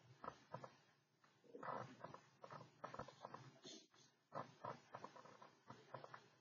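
Near silence with faint, irregular clicking and tapping from a computer mouse as words on a slide are highlighted.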